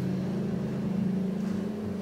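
A steady low hum with no speech, holding one pitch throughout.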